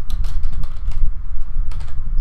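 Typing on a computer keyboard: a quick run of keystrokes as a word is typed, over a steady low rumble.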